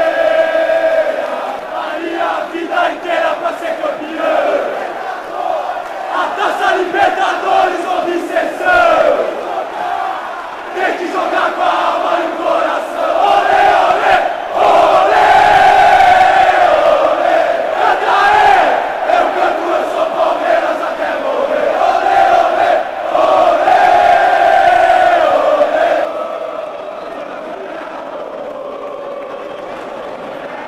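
Large crowd of football supporters chanting and singing in unison, loud and close, with the chant swelling through the middle. Near the end the chanting cuts off and a quieter, steady crowd noise follows.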